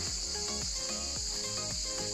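Cicadas singing in a steady, unbroken chorus, with soft background music underneath.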